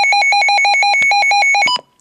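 Midland WR-100 weather radio sounding its alert test tone: a loud two-tone warble flipping rapidly between a low and a high pitch, about six times a second, then cutting off suddenly near the end.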